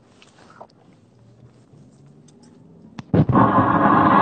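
Low background noise, then about three seconds in a click and a loud, rough, rolled vocal 'blrrr' lasting about a second and a half that cuts off suddenly.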